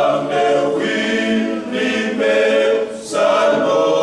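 A small group of Fijian men singing a hymn together without accompaniment, with a brief break between phrases about three seconds in.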